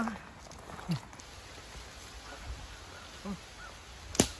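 Quiet outdoor background with two brief wordless human vocal sounds: a short grunt that falls in pitch about a second in, and a smaller one a little after three seconds.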